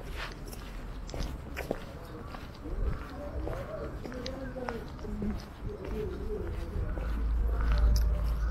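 Footsteps on a brick-paved sidewalk with scattered clicks, and faint distant voices rising and falling in the middle. A low rumble swells near the end.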